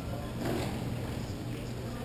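Hockey play at the far end of the rink: distant players' voices and irregular clatter of sticks and puck, with one louder hit about half a second in, over a steady low hum.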